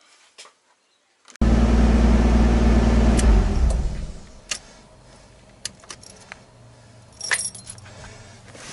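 A Nissan Skyline R32's engine running, heard from inside the cabin. It cuts in suddenly about a second and a half in, is switched off about two seconds later and dies away, followed by a few light clicks with a small cluster near the end.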